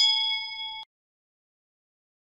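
Notification-bell ding sound effect of a subscribe-button animation: one bright ding that rings for just under a second and cuts off abruptly.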